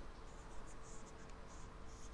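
Faint rustling and soft scratching, several short bits of it, from ActiVote voting handsets being handled and their keys pressed, over a faint steady hum.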